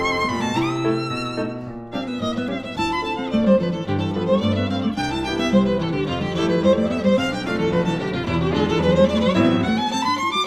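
Tango played by a violin, piano and guitar trio, with the violin leading. The violin holds a wavering vibrato note that slides upward, then about two seconds in breaks into a stream of quick notes running up and down over the accompaniment.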